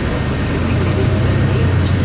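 Steady low engine hum and road noise heard inside a moving tour bus.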